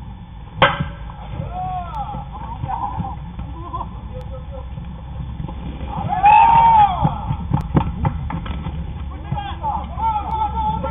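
A baseball bat hits a pitched ball with one sharp crack about half a second in. Players then shout, loudest around six seconds in, with a few short sharp smacks from the ball.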